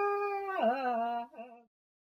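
Unaccompanied solo voice chanting in the style of the ulalim, the Kalinga sung epic: a long held note that wavers and bends down to a lower note, then fades out about a second and a half in.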